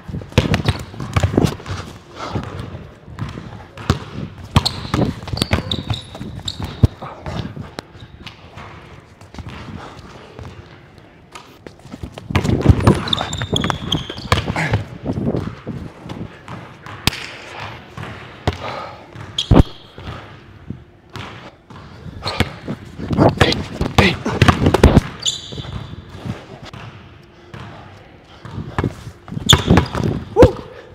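Basketball dribbled and bouncing on a hardwood gym floor in a run of sharp, irregular thuds. Short high sneaker squeaks come in now and then among the bounces.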